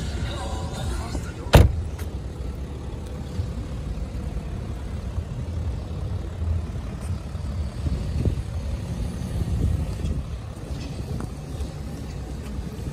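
Wind buffeting the microphone as a low, uneven rumble. About a second and a half in comes a single sharp thump, a car door being shut.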